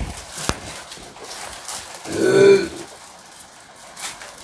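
Silk saree fabric rustling as it is lifted and unfolded on a counter, with a sharp click about half a second in. Just after two seconds comes a single short pitched vocal sound, under a second long, louder than everything else.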